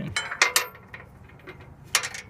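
Sharp metallic clicks and clinks of hood latch hardware being fitted on a Cub Cadet 125 garden tractor's steel hood: a quick cluster in the first half-second, then one more near the end.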